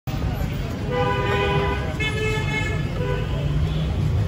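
Road traffic rumbling steadily, with a vehicle horn sounding twice, about a second in and again about two seconds in, each toot lasting under a second.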